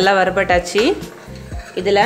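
A voice over background music, loudest in the first second, with a short lull after the middle.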